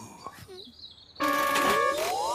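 Quiet for about a second, then a sound-effect sting starts suddenly: several held tones with whistle-like glides rising in pitch over them.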